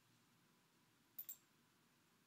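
A computer mouse button clicked once about a second in, a quick press-and-release pair of ticks, against near-silent room tone.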